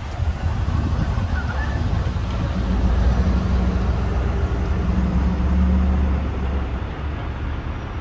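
Engines of a line of vehicles driving slowly past, a deep steady rumble that grows loudest around the middle and then eases off.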